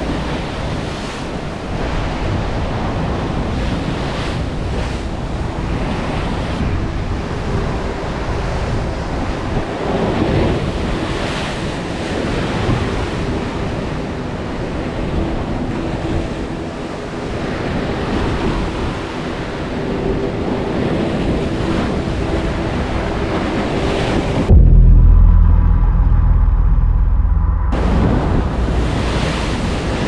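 Rough ocean surf breaking and churning against a rocky cliff base: a steady wash of crashing water, with wind on the microphone. About three seconds from the end, a loud, muffled low rumble covers everything for about three seconds.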